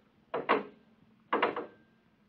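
Radio-drama sound effect: two short clunks about a second apart, each with a faint ring after it.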